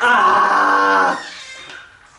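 A man's scream held for about a second, then fading out, as his bare feet go into a bucket of ice water: a reaction to the cold.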